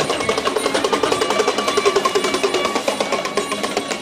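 Music with fast, steady drumming and a wavering melodic line over it.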